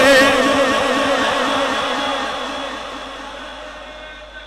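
A man's sung, wavering note through a public-address microphone breaks off just after the start. Its steady ringing tail then fades slowly away over the next few seconds.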